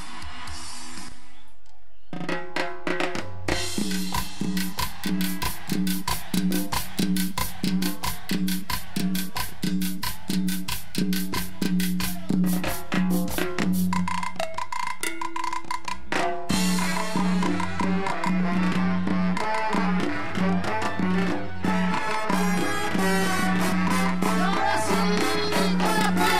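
Live cumbia band starting its set. A percussion and drum groove with steady bass comes in about two seconds in, and the fuller band joins after a brief break at about sixteen seconds.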